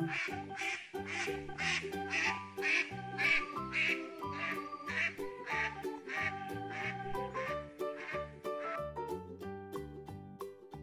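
Duck quacking, repeated over and over, about two quacks a second, over light background music with a melody; the quacks stop near the end.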